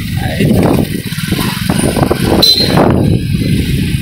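Wind buffeting a phone microphone on a moving motorbike, with the bike's engine and road noise underneath, rising and falling in gusts.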